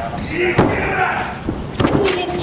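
Sharp bangs and thuds in a wrestling ring, one about half a second in and two close together near the end, amid shouting.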